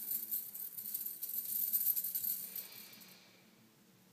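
Bangles on a wrist jingling in a rapid, continuous shimmer as the raised arms and hands are shaken out, dying away about three seconds in.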